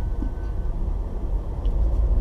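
Steady low rumble of a car's engine and road noise heard from inside the cabin while the car creeps along in slow traffic.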